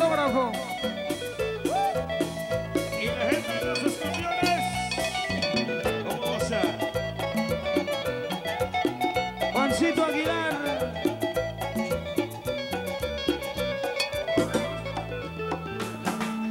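Live band music: an electric guitar plays a lead line with bent, wavering notes over a steady bass line and keyboard.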